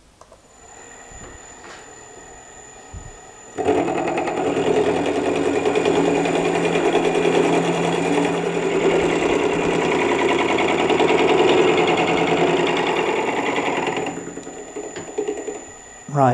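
Milling head on a metal shaper running, then an end mill cutting into the INT30 mill adaptor as the feed is wound by hand: a loud, rough cutting noise starts about three and a half seconds in, holds for about ten seconds and eases off near the end as the cut runs out.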